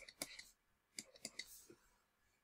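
Near silence broken by a few faint, short clicks from a stylus on a writing tablet as it handwrites.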